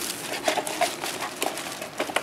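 Thin plastic shopping bag rustling and crinkling as a hand rummages inside it and pulls out a cardboard parts box, a dense crackle of many small clicks.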